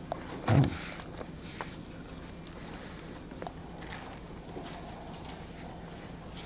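Faint paper rustling and light clicks as Bible pages and notes are handled close to a lapel microphone, with a short, louder low sound about half a second in.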